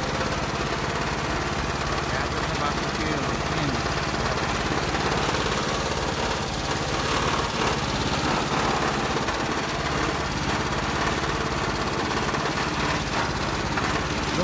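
Small engine of a farm machine running steadily at an even speed.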